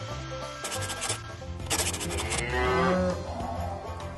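Dairy cow mooing: one long call in the second half, falling slightly in pitch, over quiet background music.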